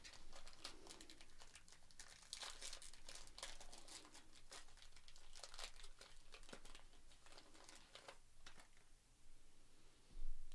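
Foil wrapper of a trading-card pack crinkling and tearing as it is peeled open by hand: a faint, irregular run of crackles that thins out near the end.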